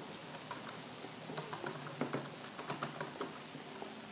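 Light, irregular finger taps and clicks, a few each second and busiest in the middle, as of typing on a keyboard.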